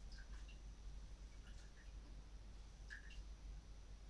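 Faint scattered small plinks and squeaks as a wet cheesecloth full of boiled brew is squeezed over a pot, over a low steady hum.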